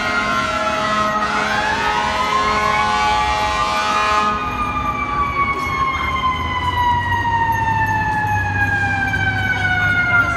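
Fire truck's Federal Q mechanical siren winding up, starting about a second in and peaking around four seconds, then slowly coasting down in pitch through the rest, over busy street traffic.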